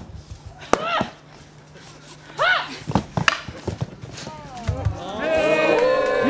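Short, high yells from fighters in a staged gladiator bout, each rising then falling in pitch, with a few sharp clacks of weapons striking. From about five seconds in, a crowd of spectators starts cheering and shouting.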